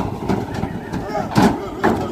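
Heifers' hooves knocking on the floor of a livestock trailer as they jump out, two sharp knocks in the second half, over the low steady running of the cattle truck's engine.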